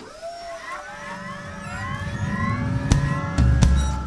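Logo-reveal sound effect: layered synthetic tones glide upward over a low rumble that swells steadily louder, with two sharp hits about three seconds in, the second landing on a deep bass boom that then fades away.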